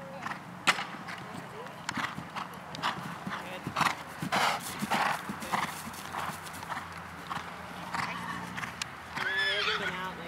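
Horse cantering on grass, its hoofbeats coming as a run of irregular thuds, with one sharp knock about a second in.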